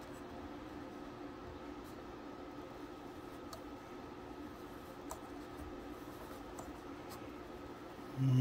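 Faint steady hum with a few soft, sparse clicks as a paintless dent repair bridge puller is slowly tightened, pulling on a glue tab stuck to a car hood.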